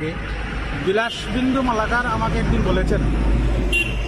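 A motor vehicle passing close by on the road: a low engine rumble that builds about a second in and is heaviest in the second half, under a man's speech.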